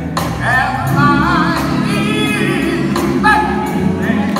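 Male gospel vocal group singing live with band accompaniment: sustained voices with wavering vibrato over group harmonies and a steady low backing.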